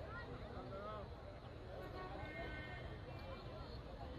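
Faint, distant voices of a crowd talking and calling out, over a low steady rumble of wind and handling noise on a phone microphone.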